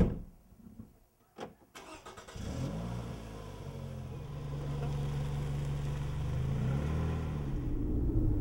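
A sharp knock, then two clicks, then a car engine starts about two seconds in and runs steadily, rising in pitch near the end as the car pulls away.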